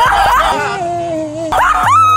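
A high-pitched, whining, whimper-like call with long sliding tones that fall slowly over about a second, then a second call rising and holding high near the end. It is an edited-in meme sound.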